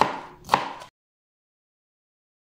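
A chef's knife chopping green bell pepper on a cutting board: two sharp chops about half a second apart, after which the sound cuts out abruptly to silence.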